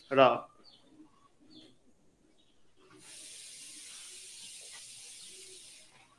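A brief voice sound just after the start, then a steady high-pitched hiss lasting about three seconds that starts and stops abruptly.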